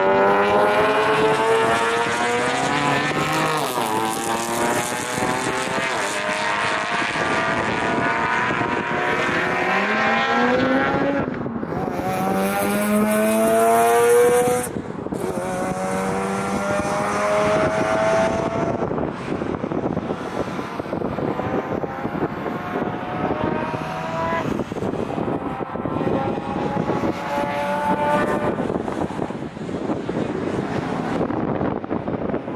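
A car's engine running hard on a race course, climbing in pitch through each gear and dropping at each shift, over and over. It is loudest about halfway through, with a brief sharp hiss.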